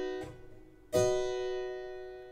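Two chords on a keyboard instrument. One is sounding at the start and stops about a quarter second in; a second chord is struck about a second in and left ringing as it fades. They are played to show C's chord with its highest note changed from the octave to the third.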